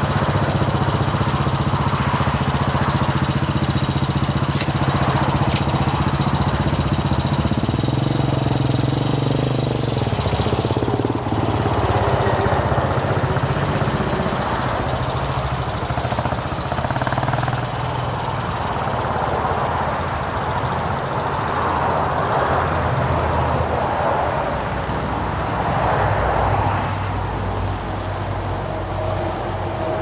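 Single-cylinder engine of a Hawk DLX 250 EFI motorcycle running steadily for about ten seconds. It is then ridden off, its note rising and falling every couple of seconds with the throttle.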